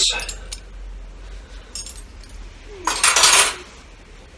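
Small cast brass miner's shovels clicking lightly against each other as they are handled. About three seconds in comes a louder, short breathy burst: a sniff or cough-like breath from the person holding them.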